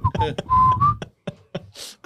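A person whistling a few short notes, one held steady for a moment, mixed with brief mouth sounds; a few clicks and a breathy hiss follow near the end.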